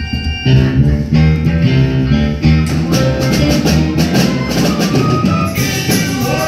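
Musical accompaniment with guitar, bass and drums, coming in about half a second in with a stepping bass line and steady cymbal strokes.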